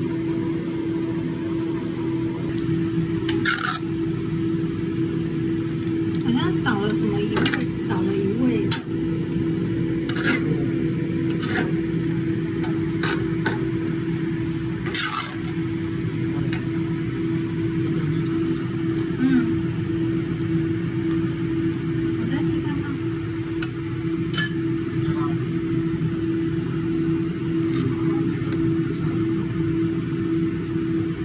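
A metal spatula and spoon clinking and scraping against a honeycomb-patterned wok as braised chicken pieces are stirred, in scattered sharp knocks. Underneath is a steady low hum.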